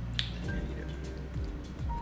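Wet mouth clicks and smacks from sucking on hard candy, one sharp click about a quarter second in, over soft background music.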